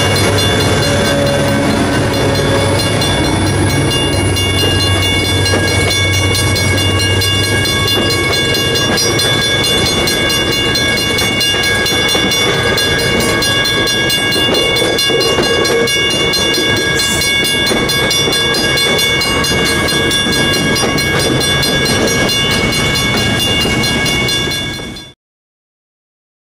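MBTA commuter train passing a grade crossing: a diesel locomotive's engine hum in the first several seconds, then bilevel coaches rolling by, with the crossing bell ringing steadily throughout. The sound fades out about a second before the end.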